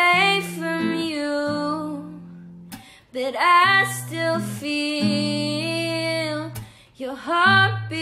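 A female voice singing a slow song over acoustic guitar, in three phrases that each begin with an upward slide into the note.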